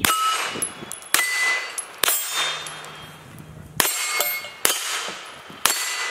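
Hi Point 995TS 9mm carbine fired six times at about one-second intervals. Each shot is followed by the bright ring of a struck steel target.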